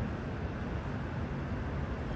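Steady outdoor city background noise with a low rumble and no distinct events.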